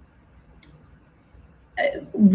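Quiet pause with low background hiss and a faint click a little after halfway, then, near the end, a short vocal sound from a woman as she starts to speak.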